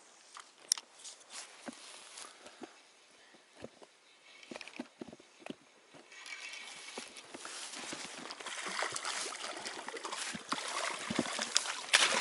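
A hooked grayling splashing at the water's surface as it is reeled in to the bank, the splashing building up through the second half and loudest near the end. Before that only faint scattered clicks.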